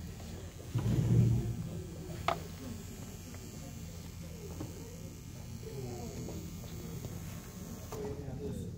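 Quiet hall with a steady low hum and faint, indistinct voices in the background. A low thump comes about a second in and a single sharp click a little after two seconds.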